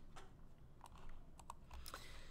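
Faint, irregular clicking of computer controls being worked, several separate clicks over two seconds.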